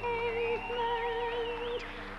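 Show tune with sung held notes over instrumental backing; a higher line wavers and then slides down and fades near the end.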